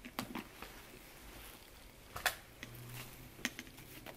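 Faint handling of a packed handbag as an agenda is taken out, with a few short clicks, the loudest about two seconds in and another near the end.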